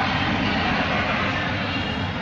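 Steady din of a crowd in a large sports hall, with no single voice or impact standing out.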